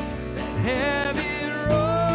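Live worship song: a strummed acoustic guitar under a man's and a woman's voices singing. Near the end the voices settle on a long held note and the music gets louder.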